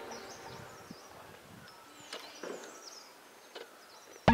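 Faint outdoor ambience with several short, high, thin bird chirps scattered through it and a few soft clicks, as the tail of background music dies away at the start.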